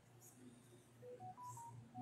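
A quick run of about five faint electronic beeps, each a short single pure tone, stepping up in pitch and then back down, starting about a second in, over a low steady hum.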